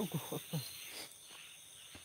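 Night insects, crickets among them, chirring steadily in high tones. A man makes several short falling 'uf' sounds in the first half-second.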